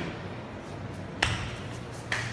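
A single sharp thump a little over a second in: a grappler sitting back onto the foam mats, pulling his partner into guard as he locks on a guillotine choke.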